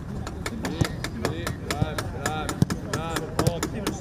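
Footballs struck in a quick passing drill: a rapid run of sharp kicks, several a second, with short shouted calls from the players in between.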